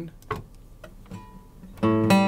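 Acoustic guitar: a couple of faint clicks in a quiet stretch, then near the end a single plucked note rings out loudly with bright overtones. The note is the octave that completes an A Phrygian scale played one note at a time.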